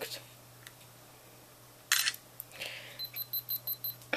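A short click about two seconds in, then a quick run of short, high electronic beeps, about seven in a second, from a handheld Canon PowerShot compact digital camera.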